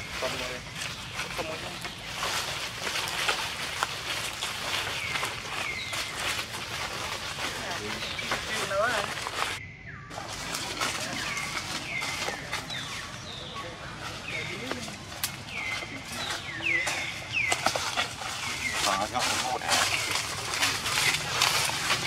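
Outdoor ambience around a macaque troop: many short, high chirps and squeaks repeat throughout, with a few rising calls and rustling among them. The sound breaks off briefly about ten seconds in.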